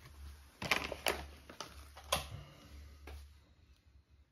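A metal spoon clicking and tapping, about five light knocks spread over a few seconds, as grated parmesan is spooned out and sprinkled over a plate of spaghetti.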